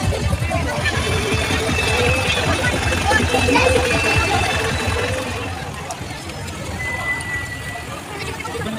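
Crowd voices mixed with the engine of a small farm tractor running as it drives past close by. The sound is loudest in the first half and eases off after about five seconds.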